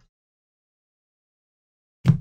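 Near silence: the sound drops out completely.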